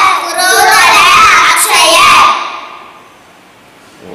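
Three young children chanting together in unison, a sing-song group recitation that stops a little over two seconds in and dies away into quiet room tone.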